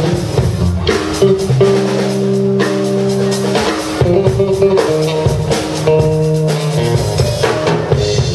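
Jazz trio playing live: a drum kit with bass and electric guitar, long held notes over a steady drum pattern.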